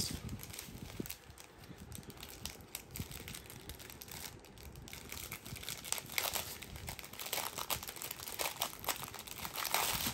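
Plastic packaging crinkling as it is handled: the clear wrap on a diamond painting kit and a small plastic packet of drills. The soft crackles grow louder and busier in the second half.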